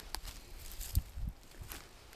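Dry grass and leaf litter rustling and crackling as it is disturbed, with a single sharp crack about a second in.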